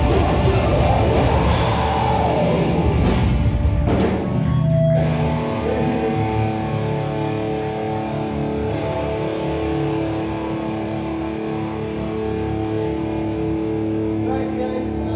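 Live metalcore band: distorted electric guitars and a drum kit playing a heavy riff with cymbal crashes. About four seconds in the drums stop and the guitars are left ringing in long held notes that slowly fade, as the song closes.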